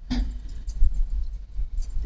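Light rustling and small clicks of papers handled in front of a tabletop microphone, over a steady low hum, with one low thump a little under a second in.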